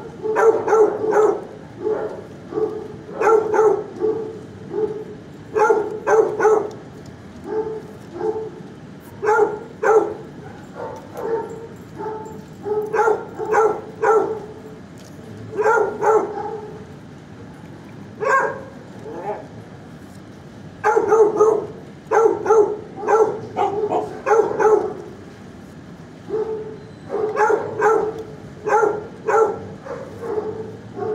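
Shelter dogs barking in bouts of several quick barks, broken by short pauses of a second or two. The dog in view lies resting with eyes closed, so the barking comes from other dogs in the kennels.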